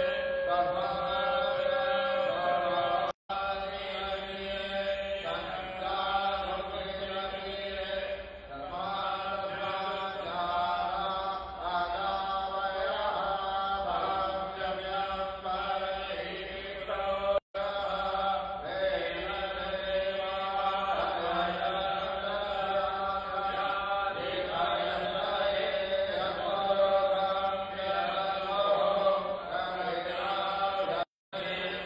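Hindu priest chanting mantras into a microphone, a continuous sung recitation with long held notes. The sound cuts out for a moment twice.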